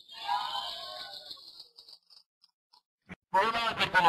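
Garbled, muffled voice over a video-call connection, fading out in the first two seconds. A short pause with one click follows, and a man's voice starts speaking clearly near the end.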